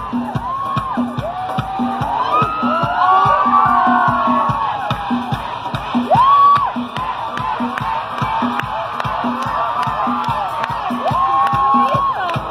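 Live concert band music with a fast, steady beat, and the audience whooping and shouting over it, loudest about halfway through.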